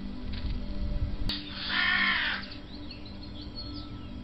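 A click, then a single loud, harsh cawing bird call just under a second long, followed by faint high chirps from small birds.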